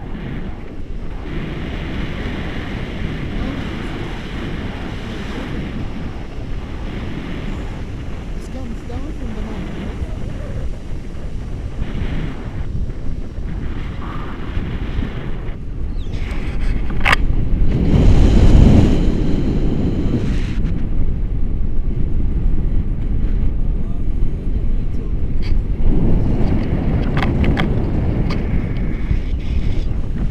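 Wind buffeting the microphone of a selfie-stick camera on a tandem paraglider in flight: a steady low rushing that swells loudest about eighteen seconds in, with a brief sharp click just before the swell.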